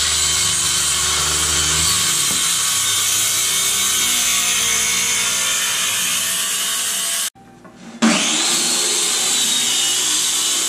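Handheld circular saw cutting 12 mm plywood, the motor running steadily under load with the blade chewing through the sheet. About seven seconds in it stops abruptly, then after a short lull the saw starts again with a rising whine and goes on cutting.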